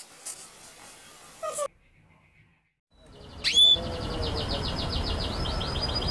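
Channel intro soundtrack: after about a second of dead silence, a rising swish and then a rapid, high chirping trill of birdsong over a low, rushing background hiss.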